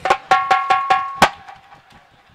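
A quick run of about seven percussion strikes with a ringing, metallic, bell-like tone. The strikes end on the loudest hit just over a second in, then ring away.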